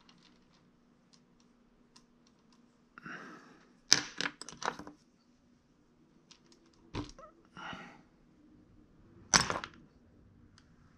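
Sculpting tools being handled at a workbench: a quick cluster of hard clicks about four seconds in, a single knock about seven seconds in, and a louder knock near the end, with short soft rubbing sounds between them.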